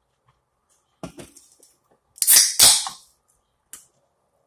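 Close-miked eating sounds of lamb birria: a few small crackles about a second in, then two loud, noisy mouth sounds in quick succession, and a short click near the end.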